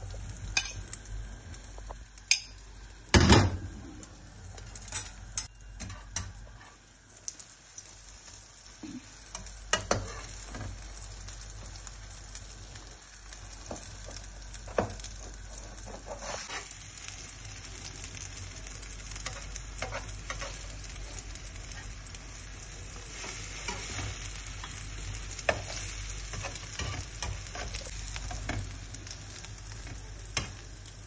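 Beaten egg and bread slices sizzling in hot oil in a frying pan, a steady hiss, while a fork scrapes and taps against the pan now and then. A sharp knock about three seconds in is the loudest sound.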